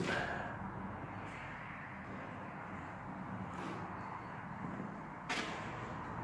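Quiet room tone with a few faint, brief rustles, the clearest near the end: handling noise as the phone is moved.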